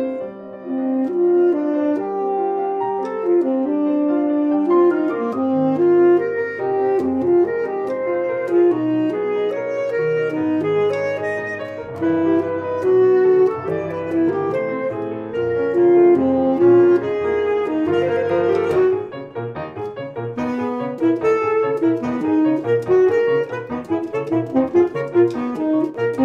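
Tenor saxophone and grand piano playing a classical sonata together, the saxophone holding sustained melodic notes over the piano. The music dips briefly in loudness about two-thirds of the way through, then continues with shorter, choppier notes.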